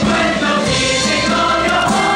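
Large stage-musical chorus singing together, with pit orchestra accompaniment.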